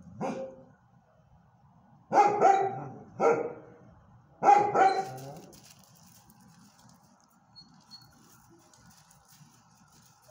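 A dog barking: one short bark at the very start, then three loud barks about two, three and four and a half seconds in.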